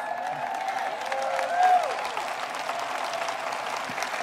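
Audience applauding steadily, with a few faint voices in the crowd.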